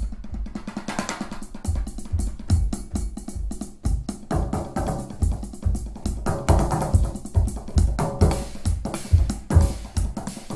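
Nord Drum 4-channel drum synthesizer played live from electronic pads with sticks: a fast, dense pattern of synthesized, sample-free drum hits, with deep bass-drum-like thumps under quick snare- and tom-like strokes.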